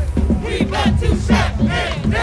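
Marching band drum line keeping a steady beat of about four strokes a second while band members shout a chant together; the horns drop out for this stretch.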